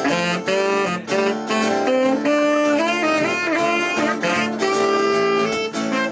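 Saxophone playing a melodic lead line over a strummed acoustic guitar, with no vocal.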